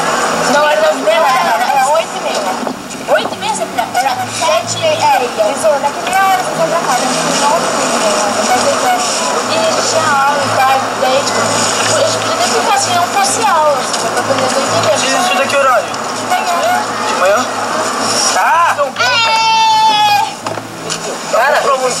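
Several young men's voices talking and calling out over one another, with one long drawn-out shout about nineteen seconds in.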